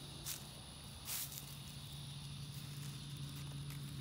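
Outdoor background of insects trilling in a steady high drone over a steady low hum, with two brief rustles, the louder about a second in.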